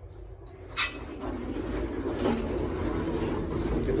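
Old Otis elevator operating: a sharp click just under a second in, then a steady mechanical rumble and rattle that builds and carries on as the car's machinery runs.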